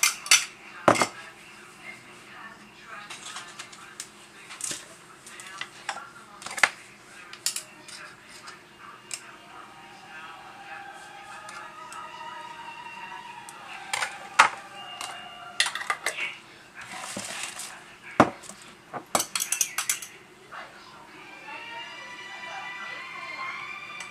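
Metal spoon and fork clinking against a small glass measuring cup and jars on a kitchen counter: scattered single clinks and knocks, with a quick run of stirring clinks about nineteen seconds in. Faint voices in the background.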